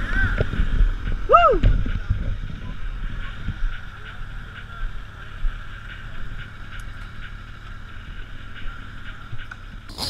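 Motorcycle engines running at low revs, louder in the first two seconds, with a short rise and fall in pitch about one and a half seconds in.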